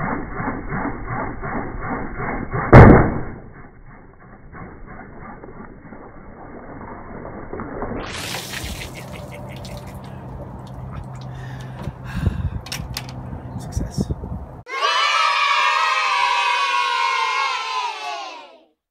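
A 4-foot latex balloon, inflated with carbon dioxide gas from dry ice, bursts with one loud bang about three seconds in. The sound is slowed down and muffled. Music comes in a few seconds before the end.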